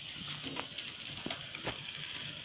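Quiet, steady sizzle of a multigrain dhapata flatbread cooking in an oiled pan over a low gas flame, with a few faint knocks as dough is handled on a steel plate.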